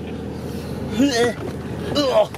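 Vehicle cabin noise: a steady low rumble of the engine and tyres crawling over a rough, bumpy dirt track, with a short vocal exclamation about a second in.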